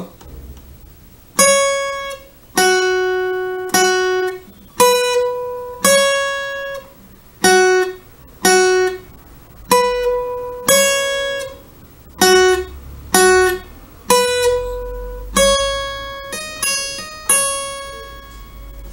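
Acoustic guitar playing a single-note melody slowly on its two highest strings, one plucked note about every second, each left to ring and fade. Near the end comes a quick run of hammer-ons and pull-offs.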